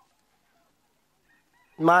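Near silence, then a man's voice begins speaking loudly near the end.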